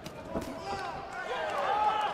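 Boxing ring sounds: a sharp slap and a thud of gloved punches landing in the first half second, then a run of short squeaks of the boxers' shoes on the ring canvas.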